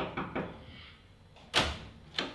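A wooden door being opened: a few light clicks, then one loud sharp knock about one and a half seconds in as the door swings open.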